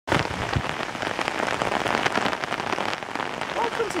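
Heavy rain falling steadily, a dense hiss full of separate drop hits. A woman's voice starts near the end.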